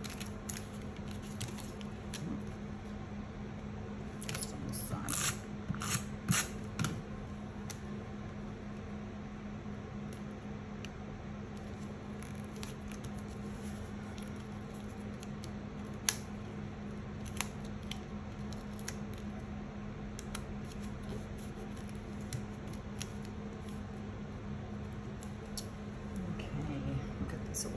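Paper and chipboard pieces being handled and pressed onto a scrapbook page on a tabletop: a quick cluster of rustles and taps a few seconds in, then scattered light clicks, over a steady low hum.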